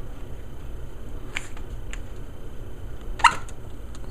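Plastic suction-cup window hook handled and pressed onto window glass: a couple of light clicks, then one short, sharper sound about three seconds in, over a steady low hum.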